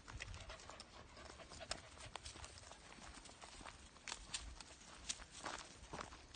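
Footsteps and scuffs on a gravelly dirt path during a walk with a leashed dog: irregular light clicks and crunches, with a low rumble underneath.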